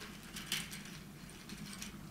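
Light clicks and taps from a small box of dressmaker's pins being handled and set down on a hard table, a few clicks about half a second in and a few more near the end.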